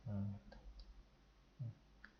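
A few faint computer-mouse clicks between a man's brief murmurs, one at the start and another short one near the end.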